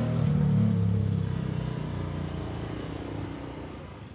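Motor scooter engine pulling away and fading steadily into the distance.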